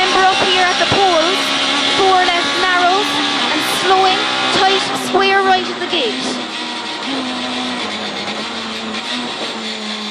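Ford Fiesta rally car's engine under hard acceleration, heard from inside the cabin. In the first half its note dips and recovers several times, then it holds a steadier note in fifth gear.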